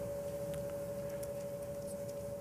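A pause with no speech: a steady, faint hum at one pitch over low room noise.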